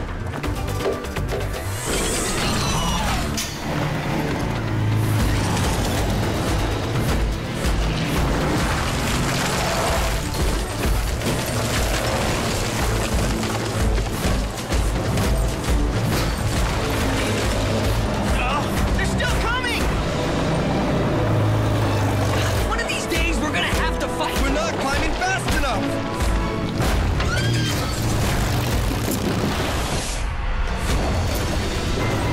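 Action-cartoon soundtrack: background music mixed with repeated booms and crashes as a giant robot mech climbs and fights, with wordless shouts and grunts.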